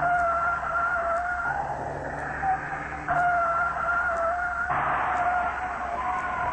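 A BMW sedan's tyres squealing as it slides on a skid pad, in three long, steady squeals of about a second and a half each, with a low engine hum underneath.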